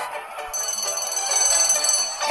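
A cartoon clock's bell ringing steadily, starting about half a second in, over light background music.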